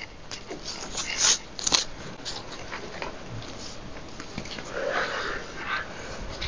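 Pens scratching on paper and paper rustling, with a cluster of short sharp scratches about a second in and a softer rustle near the end.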